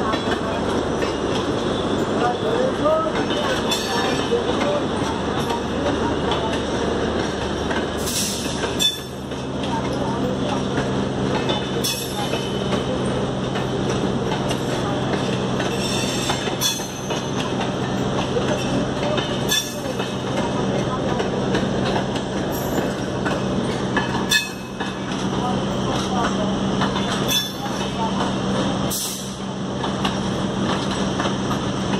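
Electric suburban train (EMU) running on the rails, heard from on board, with continuous wheel and running noise. Sharp knocks come every few seconds as the wheels cross rail joints and points. About nine seconds in, a steady low motor hum joins and holds.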